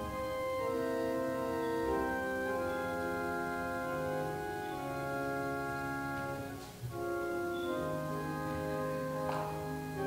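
Church organ playing a slow piece in sustained, held chords that change every second or so, with a brief break in the sound about seven seconds in.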